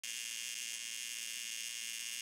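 AC TIG welding arc on aluminum from a Lincoln Square Wave TIG 200, a steady high-pitched buzz.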